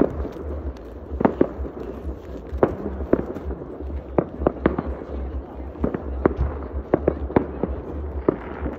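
Fireworks going off over a town: sharp bangs and cracks at irregular intervals, about one or two a second, some echoing.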